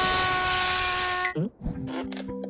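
Cartoon locomotive brakes screeching: a steady, shrill squeal over hissing that cuts off abruptly about a second and a half in. Light music starts near the end.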